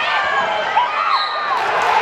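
Basketball sneakers squeaking in short arching squeals on a hardwood gym floor, with a ball being dribbled, over steady crowd noise in the gym.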